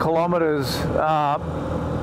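A man talking over a small motorcycle's engine running steadily at cruising speed; his words stop about two-thirds of the way in, leaving the even engine hum.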